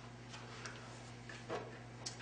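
Quiet room with a steady low hum and a few faint, irregularly spaced light clicks, like papers and pens being handled at the tables.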